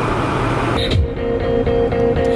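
Steady road noise inside a moving car, cut off a little under a second in by background music with a held tone over a bass line.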